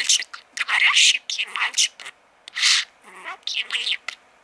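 Budgerigar chattering in a string of short, high, whispery bursts, with a brief pause about halfway through.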